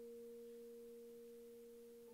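Faint vibraphone notes ringing on, two tones an octave apart held and slowly dying away.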